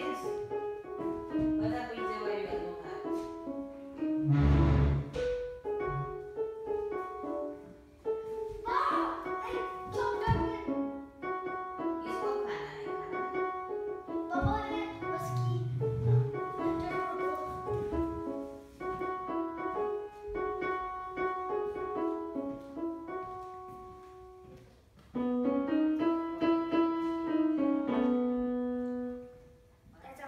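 A child playing a simple tune on a portable electronic keyboard set to a piano sound, one note at a time. There is a short pause about two-thirds through, and the tune ends on a held note.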